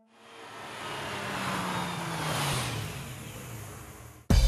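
A vehicle pass-by sound effect: a rushing noise swells up from silence, peaks about two and a half seconds in, then fades, while a low engine tone falls steadily in pitch as it goes by.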